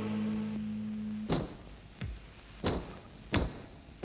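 Quiet passage of a Hindi film-song soundtrack: a low held note stops about a second in, then four sharp percussive strikes with a bright ring follow, evenly spaced about two-thirds of a second apart.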